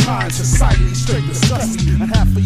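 Hip hop music: rapped vocals over a bass line and a drum beat.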